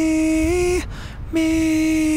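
A man singing in falsetto, holding two sustained notes on the word "me", each a little under a second long with a short breath between; the first steps slightly up in pitch about halfway through. He is drilling the falsetto blend on this phrase.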